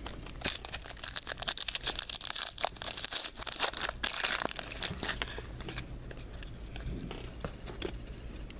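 Foil trading-card pack wrapper being torn open and crinkled by hand: a dense run of crackles, thickest in the first half and thinning toward the end.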